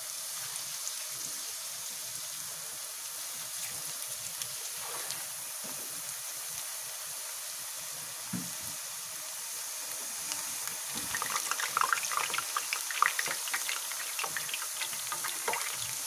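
Raw potato slices sizzling as they fry in hot oil in a kadhai, a steady frying hiss. About two-thirds of the way through it turns louder and more crackly as more fresh slices go into the oil.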